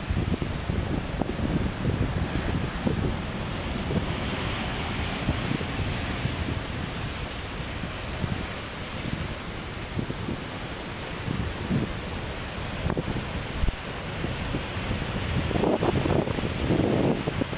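Sea waves washing over a concrete breakwater ledge and breaking against its boulders, a continuous surf hiss that swells and eases, with wind buffeting the microphone underneath.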